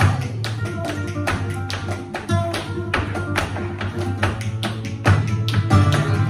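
Flamenco dancer's footwork (zapateado): heel and toe strikes on the wooden stage, getting denser and louder about five seconds in. Under it runs flamenco guitar playing tarantos.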